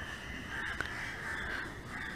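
Faint, distant bird calls over low background noise.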